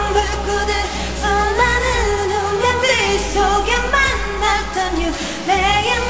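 A female pop singer's live vocals, with the instrumental backing track stripped out, singing continuous melodic lines with held notes that bend in pitch. A faint steady low bass remains underneath.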